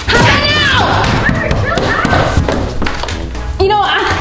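Thumps of a hand banging on a closed door, over background music and a girl's voice calling out.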